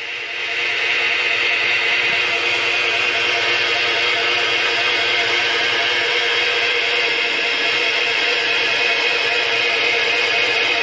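Milling machine running, its spindle driving a twist drill through an 8 mm flat-stock flange: a steady whir with several held tones that comes up to full level within the first second and then stays even.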